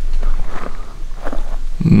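Footsteps on a gravel road, a few separate crunching steps.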